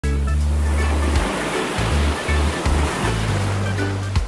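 Ocean surf washing on a beach, a continuous rush of waves, mixed with music built on deep held bass notes that shift every half second or so.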